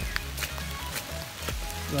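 Heavy rain falling: scattered sharp drop ticks close to the microphone, over a low, steady rumble of wind on the microphone.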